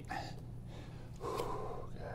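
A man breathing hard from exertion during shoulder-tap reps: one long, audible breath lasting about a second, starting near the middle, over a faint steady low hum.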